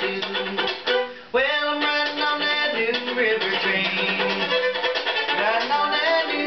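A string band plays an instrumental break with a fiddle carrying the melody. The music dips briefly about a second in, then comes back with sliding notes.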